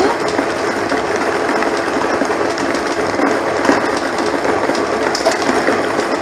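Air-blown lottery draw machine running: numbered plastic balls tumble and clatter against the walls of its clear chamber in a steady, dense rattle over the whir of its blower.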